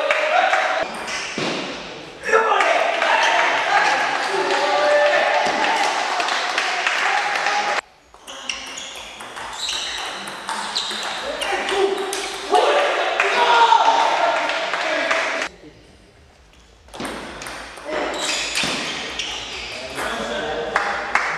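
Table tennis ball clicking off bats and the table in rallies, over steady voices talking in the hall. The level drops sharply twice, near 8 seconds and again for about a second and a half near 16 seconds.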